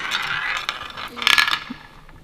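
The ball spinning and rattling around a toy roulette wheel as it runs down. A louder clatter comes near the end, then it settles into a pocket with a few faint clicks.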